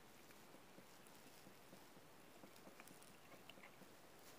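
Near silence: faint room tone with a few faint small clicks in the second half.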